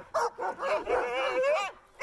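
Sled dogs whining and yipping in high, wavering calls that break off near the end.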